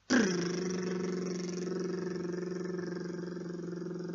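A man's voice humming one low note. It drops in pitch at the start and is then held steady for about four seconds.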